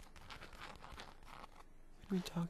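Faint, crackly scratching and light tapping of fingers on leather.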